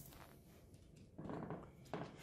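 A small dog playing on a hardwood floor makes a short, faint sound a little over a second in, and there is a light click near the end.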